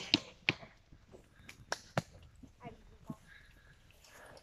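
Traditional wooden bows being shot by several archers: a run of sharp snaps from released bowstrings, irregularly spaced, several in the first half and fewer later.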